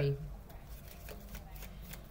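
Tarot cards being shuffled and handled by hand, a quiet papery rustle.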